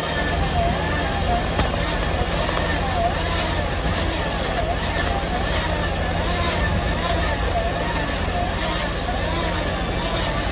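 A McHale bale wrapper running off a tractor, spinning a silage bale as stretch film is wound on, over the steady running of the tractor engine. A whine rises and falls in an even cycle about once a second.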